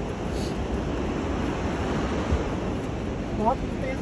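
Wind buffeting the microphone: a steady, rumbling rush of noise.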